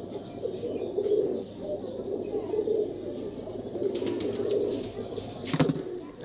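Domestic pigeons cooing steadily in a low, fluttering warble, with a short, sharper sound near the end.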